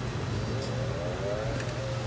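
A dirt bike engine revving, faint, its pitch rising in long sweeps and then holding steady, over a steady low hum.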